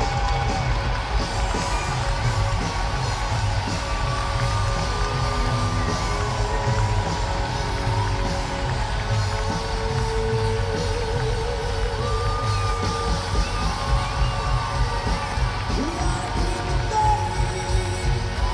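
Live rock band playing in an arena, heard from among the audience: a steady bass beat under long sustained sung and instrumental notes, with the crowd cheering.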